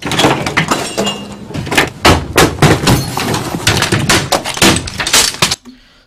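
A rapid run of loud crashes and smashing impacts with breaking, glass-like clatter, as things on an office desk are knocked over and smashed. It stops about half a second before the end.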